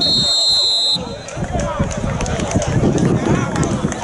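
A referee's pea whistle blown in one shrill blast of about a second at the start, over nearby spectators talking throughout.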